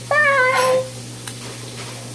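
A girl's single drawn-out vocal call, high and sliding slightly down in pitch, lasting under a second, followed by a faint click.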